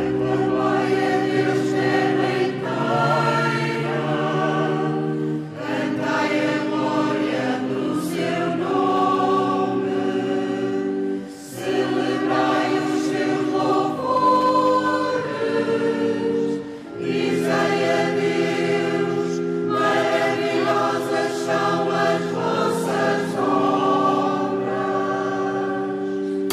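Mixed choir of men and women singing a hymn together, in sustained phrases of about five or six seconds with short breaks between them.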